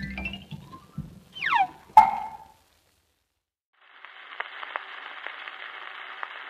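The end of a 1950s jazz sextet recording on a 78 rpm shellac disc: the last chord dies away, a short comic tag follows (a quick rising run, a thump, a falling slide and a sharp ringing hit), then the music stops. After about a second of near silence, the record's surface hiss with scattered clicks comes up.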